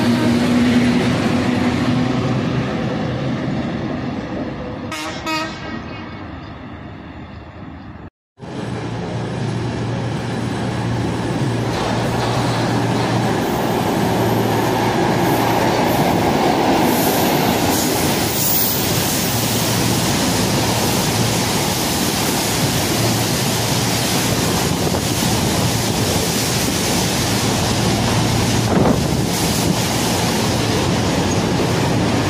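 Class 73 electro-diesel locomotives pulling away and fading into the distance. After a cut, a second train of locomotives and a long rake of engineering wagons passes close by at speed, loud and steady.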